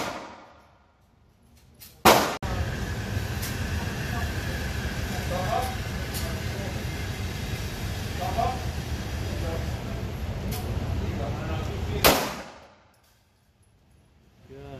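A loud bang about two seconds in, then a steady low mechanical drone of a shooting range's target carrier running the paper target back in. Another loud bang near the end cuts the drone off.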